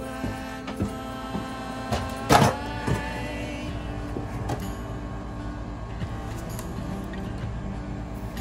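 Small 12-volt water pump running with a steady electric hum while the bus's water lines are under pressure, with a sharp knock about two and a half seconds in.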